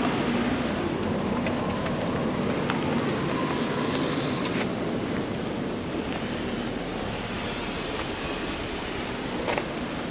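Steady wind rushing across the microphone, with a few faint clicks.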